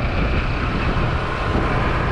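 Steady rumble and wind noise of a vehicle moving along a street, with a faint steady whine above it.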